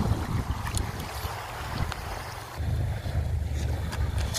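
Wind buffeting the microphone: a low, uneven rumble that grows stronger about two and a half seconds in.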